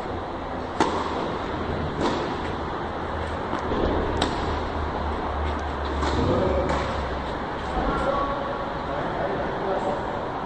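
Tennis racket strikes on the ball in a rally: a sharp serve hit about a second in, the loudest sound, followed by several more hits at irregular intervals of one to two seconds, over a steady low hum.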